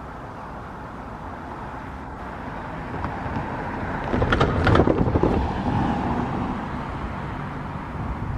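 Low rumble of an approaching electric commuter train, mixed with wind noise on the microphone. The rumble swells to a louder, crackling peak about four to five seconds in, then eases.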